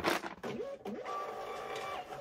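Thermal label printer running, a steady motor whine from about half a second in as it feeds and prints a shipping label.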